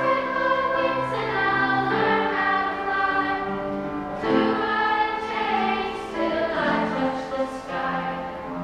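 A choir of young voices singing a slow song in long held notes, with instrumental accompaniment.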